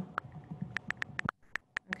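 Typing on an iPad's on-screen keyboard: about eight quick, uneven taps.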